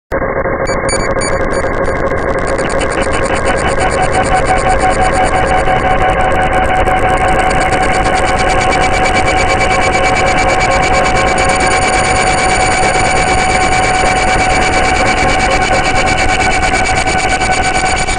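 Electronic dark-ambient noise drone: a dense, loud hiss layered with several steady held tones, and a fast-pulsing high-pitched layer that comes in within the first few seconds.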